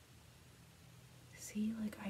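Quiet room tone with a faint steady low hum, then a woman starts speaking softly about one and a half seconds in.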